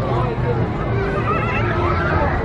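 Crowd of spectators chattering, many overlapping voices, over a steady low hum.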